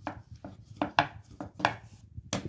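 About half a dozen uneven knocks and taps on a wooden pastry board as a lump of chebakia dough is handled, the loudest about a second in.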